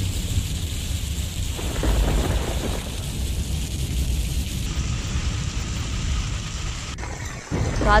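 Heavy monsoon rain pouring onto a road, a steady hiss with a low rumble under it. It cuts off near the end.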